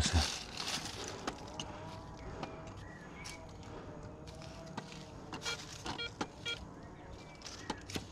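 Metal detector giving a faint, wavering tone as its search coil is swept through a rock crevice, with scattered clicks and rustles of the coil against rock and dry leaves. The tone is the detector picking up a very weak target signal.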